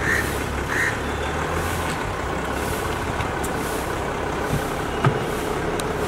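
Steady street traffic noise with a low engine hum, two short high beeps right at the start, and a single sharp click about five seconds in.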